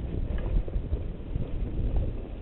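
Wind buffeting the camera's microphone over the rumble of mountain bike tyres rolling on a bumpy dirt trail, with scattered short knocks and rattles from the bike.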